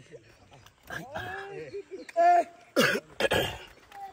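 Voices speaking or calling in short phrases, followed about three seconds in by two loud, rough, coughing bursts.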